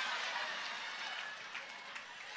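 Audience laughing and applauding, the noise dying down gradually.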